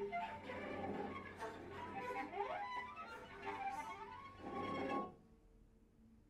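Live contemporary chamber ensemble playing, with bowed violin and cello among the instruments and a few quick rising slides about two seconds in. The music breaks off abruptly about five seconds in, leaving near silence.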